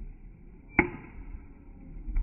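A softball bat striking the ball about a second in: one sharp crack with a short metallic ring.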